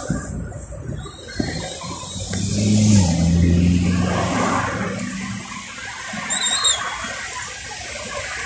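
Road traffic passing close by: car engines running over tyre noise, with a low steady engine drone about two to four seconds in that drops in pitch partway. A brief high squeal comes near the end.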